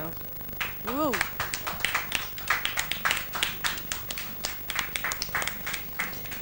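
Applause from a small group of people clapping, with one short vocal whoop about a second in.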